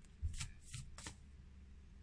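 A deck of oracle cards being shuffled by hand: a few short, faint card flicks, mostly in the first half.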